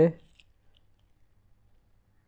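The end of a spoken "okay", then a few faint, short mouse clicks over quiet room tone.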